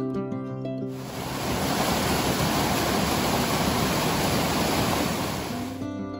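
Steady, dense rush of a waterfall and water cascading over rock, between short stretches of background music: music for about the first second, then the water alone, with the music returning near the end.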